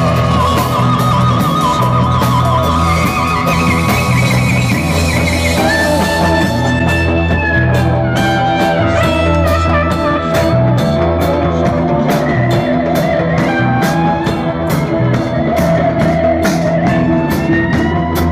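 Psychedelic rock music with guitar, bass and drums; from about six seconds in, a steady beat of cymbal strokes, about three or four a second.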